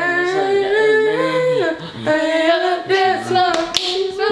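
Singing voice with no instruments heard: held notes that step and slide in pitch, broken briefly a little under two seconds in.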